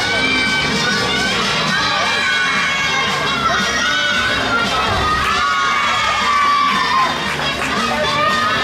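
Many young girls' voices shouting and cheering at once, high-pitched and overlapping, keeping up throughout as a gymnast tumbles on the floor.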